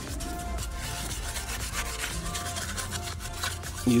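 A brush scrubbing acid wheel cleaner off a wheel rim, a steady rough rubbing, over faint background music.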